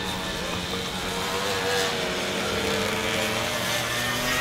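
Off-road motorcycle engine running as the bike crosses the field, a steady note that rises slightly in pitch.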